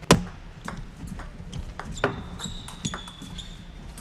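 Table tennis doubles rally: the plastic ball clicks sharply off rubber paddles and the tabletop, about three hits a second, the loudest being the serve at the start. A brief high squeak sounds around the middle of the rally.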